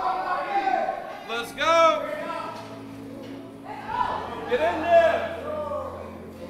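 Men's voices shouting and calling out in a large, echoing gym room, with a low steady hum that sets in about a second and a half in.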